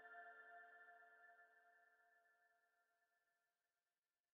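Background music's last held chord of steady tones fading out slowly, dying away to silence about three seconds in.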